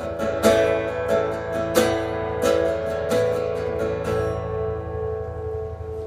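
Acoustic guitar strummed in an instrumental passage, chords struck about every half second to second for the first few seconds, then a last chord left ringing and fading away.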